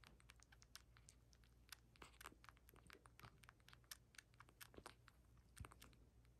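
Bottle-fed kitten suckling on a feeding-bottle nipple: faint, irregular clicks several times a second.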